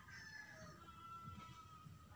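Near silence: faint room tone with a faint thin tone or two in the background.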